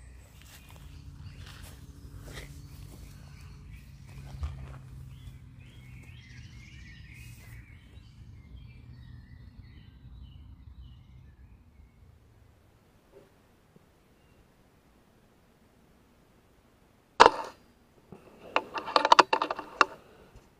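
A single shot from a .22 Brocock Sniper XR pre-charged pneumatic air rifle, one sharp crack near the end, followed about a second later by a quick run of mechanical clicks. Before it come low handling and rustling noise and faint bird chirps, then a few seconds of near quiet.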